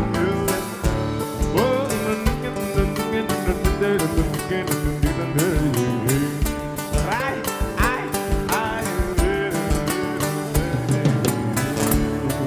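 Live band playing an instrumental passage between sung lines, with acoustic guitar, bass guitar and drums keeping a steady beat.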